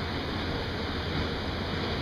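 Steady noise of a running fan, with a faint constant high-pitched whine.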